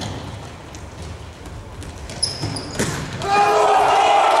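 Futsal ball being kicked and sneakers squeaking briefly on a sports-hall floor, echoing in the hall. Near the end a sharp kick is followed by a sudden burst of loud shouting as a shot goes in on goal.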